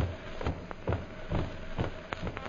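Footsteps sound effect in a 1930s radio drama recording: a steady walk of about two steps a second.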